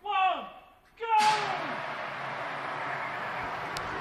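A shouted call, then about a second in the two CO2 fire extinguishers powering a home-made chair vehicle are let off: a sudden, loud gas hiss that keeps going steadily.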